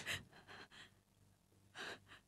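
A distressed woman's gasping breaths: a sharp intake at the start, faint breathing, then another gasp near the end.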